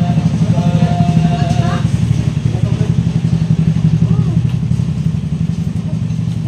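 A motorcycle engine idling, a low, even rumble that runs steadily throughout.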